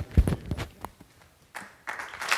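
A few scattered knocks and thumps, the loudest a low thump just after the start, then a short rush of noise near the end.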